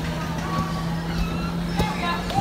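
Bumper car ride running: a steady low hum, with voices and music faint in the background and a sharp click near the end.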